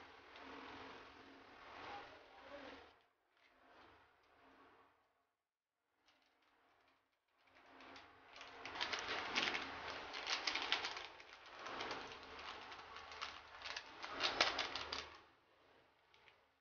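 Rustling and crinkling of handling noise as dried seaweed flakes and sesame seeds are sprinkled by hand over noodles: a short stretch at the start, a pause, then a longer, louder crackly stretch from about eight seconds in.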